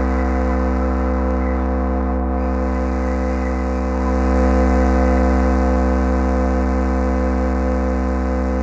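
Sustained electronic synthesizer drone: a held chord of steady tones over a deep bass note, with no beat, swelling a little about halfway through.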